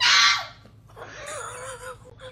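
A crated puppy gives one loud, sharp bark, then a drawn-out wavering howl starting about a second in. The puppy is protesting at its littermate being cuddled.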